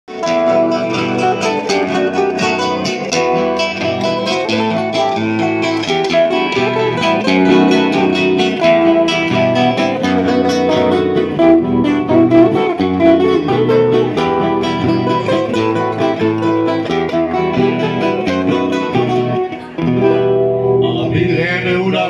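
Several acoustic guitars strum and pick together in an instrumental introduction. After a brief dip just before the end, a man's voice starts singing.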